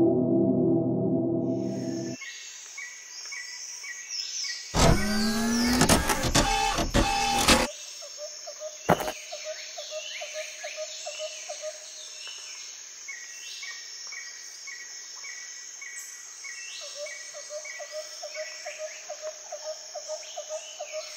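Jungle ambience of insects and birds, with fast repeating chirps throughout, after a gong-like ringing tone that cuts off about two seconds in. A loud, harsh burst of calls runs from about five to nearly eight seconds in, and a single sharp click follows about a second later.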